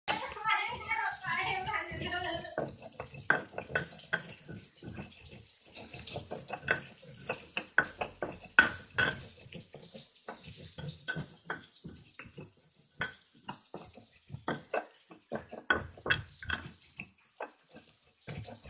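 Stone pestle working a chili paste in a stone mortar (cobek and ulekan): an irregular run of short knocks and scrapes, a few a second, as the chilies are crushed and ground. A voice speaks over the first couple of seconds.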